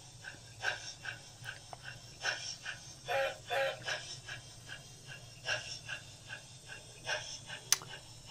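Gn15 model train running on a small layout: soft clicking about three times a second over a low steady hum.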